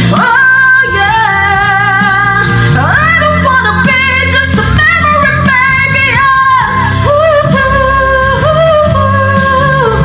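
A woman singing a ballad into a microphone, holding long notes with vibrato and sliding up to a higher, belted note about three seconds in.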